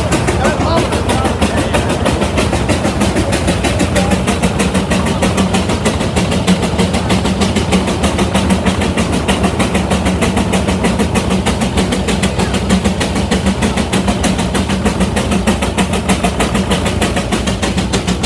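Frick steam traction engine working under load on a Baker fan: a fast, even exhaust beat that holds steady throughout, with a steady low hum beneath.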